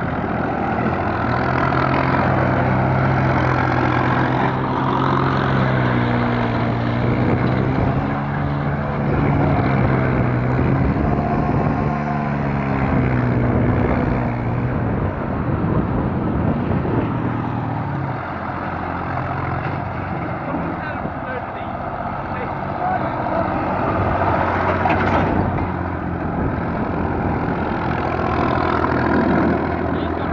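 Massey Ferguson 35X tractor's three-cylinder diesel engine running hard and loud. Its note sags and climbs again several times in the middle as the throttle and load change.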